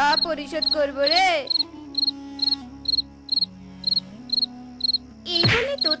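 Crickets chirping in short, evenly spaced pulses, about two to three a second, over a low, held music tone: a night-time ambience effect. A cartoon voice cries out in the first second, and a loud hit with a shout comes near the end.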